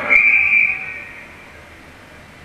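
A single high-pitched whistle, held about half a second and then fading out within a second.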